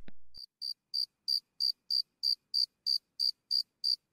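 Cricket chirping, used as the comic 'crickets' cue for an awkward silence: short high chirps repeating evenly about three times a second.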